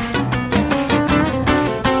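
Instrumental passage of a live acoustic song, with plucked acoustic guitar to the fore.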